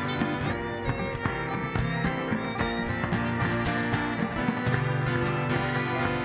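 Church band playing an instrumental passage of a slow hymn on strummed acoustic guitar, fiddle and piano, with no singing heard.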